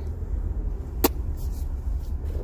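Car engine running with a steady low rumble heard from inside the cabin, with a single sharp click about a second in.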